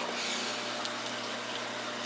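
Aquarium filtration running: a steady low hum with an even rush of moving water.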